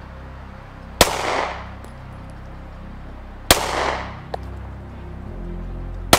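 Two shots from a Stoeger STR-9C 9mm compact pistol, about two and a half seconds apart, each with a short echo, and a light click just after the second.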